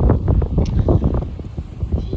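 Wind buffeting the phone's microphone in loud, uneven gusts, a heavy low rumble that rises and falls.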